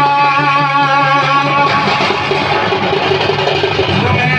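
Live Danda Nacha folk music played loud and steady: a held, slightly wavering melody line over a repeating low beat.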